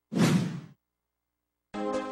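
A single whoosh sound effect, about half a second long, for an animated broadcast logo transition. It is followed by dead silence, and music comes in near the end.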